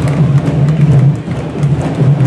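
Candombe drums, the chico, repique and piano, played with hand and stick by a marching drum line in a dense, continuous rhythm.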